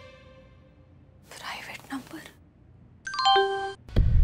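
A brief airy whoosh, then about three seconds in a short mobile-phone notification chime of a few bright notes: a message arriving on the phone.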